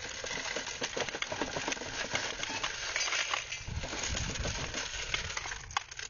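Loose brass cartridges clinking and rattling against each other as they are pulled out of a motorcycle and dropped onto a pile of more cartridges: a dense run of small metallic clicks, with a dull low rumble about halfway through.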